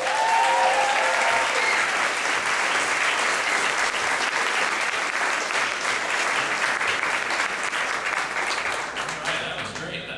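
Live audience applauding and cheering, with a voice calling out over the clapping in the first second or so. The clapping thins out near the end.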